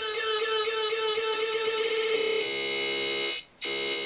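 Music from DJ software stuck in a very short beat loop: a tiny slice of the playing track repeats so fast that it turns into a steady buzzing tone. The tone changes character about two and a half seconds in and cuts out for a moment near the end.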